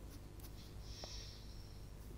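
A quiet pause of room tone, with a brief faint hiss about a second in and a few light clicks.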